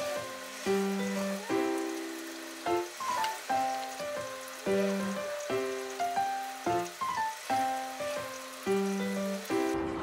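Soft instrumental background music: a simple melody of held notes over a low note that comes back about every four seconds.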